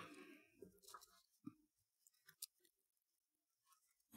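Near silence, with a few faint ticks and rustles of paper and twine as twine is threaded through punched holes in a scrapbook paper panel.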